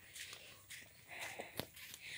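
Faint footsteps of a person walking on a road, soft steps about two a second, with one sharper click about one and a half seconds in.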